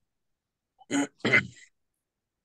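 A person clearing their throat: two short sounds close together about a second in.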